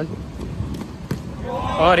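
Cricket ball knocking on the indoor pitch during a delivery: three short, sharp knocks within about a second.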